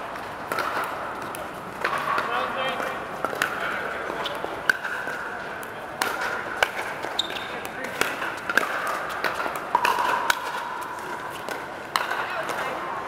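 Pickleball paddles hitting a plastic pickleball: sharp pops at irregular intervals, roughly one every second, from rallies on several courts. Indistinct chatter of players goes on underneath.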